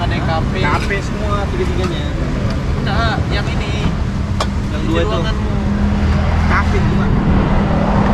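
Road traffic with a steady low rumble and an engine hum that grows stronger in the second half, under background chatter, with a single sharp click about four seconds in.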